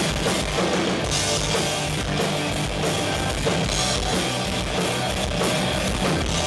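Rock band playing live: electric guitars, bass guitar and drum kit in a loud, dense instrumental passage with no singing.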